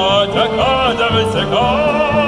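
A man singing into a microphone, amplified through loudspeakers, with a band accompanying him. His held notes waver with a wide vibrato.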